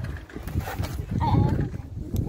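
Wind buffeting the microphone with a gusty low rumble. A short, bending call, a voice or an animal, is heard in the background a little past a second in.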